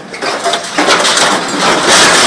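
An MC 430 R hydraulic scrap shear's steel jaws crushing and tearing scrap metal. A few sharp knocks come first, then a dense grinding, crunching noise from about a second in that grows louder.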